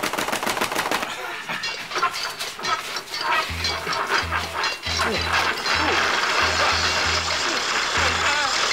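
Sound effects of a make-believe mechanical calculating machine being operated: a rapid clatter of clicks, then from about halfway through a run of low, uneven pulsing hums as its wheel is turned.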